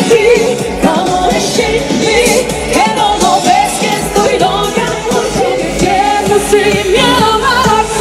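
Live pop music from a stage band, with female vocalists singing over it at full volume.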